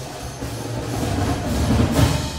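Percussion ensemble playing a crescendo: a dense roll on drums and cymbals swells steadily, reaching its loudest at the end.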